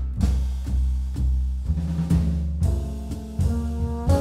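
Jazz quintet playing live: drum kit strikes over deep double bass notes and piano, with held chord tones entering about halfway through.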